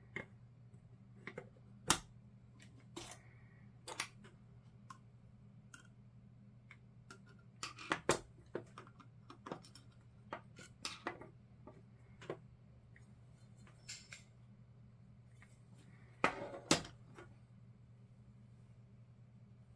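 Die-cast metal toy cap gun being unscrewed and taken apart with a screwdriver: scattered sharp clicks and clacks of small metal and plastic parts, with a busier cluster about eight seconds in and another near the end.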